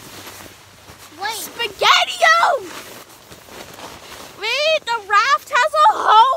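A child's high-pitched voice making wordless sliding cries, the pitch swooping up and down, in two stretches: about a second in and again from about four and a half seconds.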